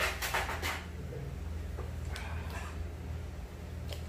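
Short bursts of rustling as a fresh lettuce wrap is handled and folded, loudest in the first second, with a weaker burst a couple of seconds in, over a steady low hum.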